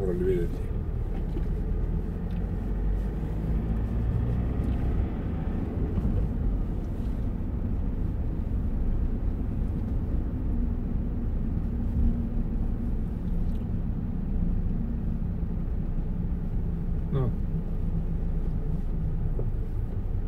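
Steady low rumble of a car driving at moderate speed through city streets, heard from inside the cabin: engine and tyre noise.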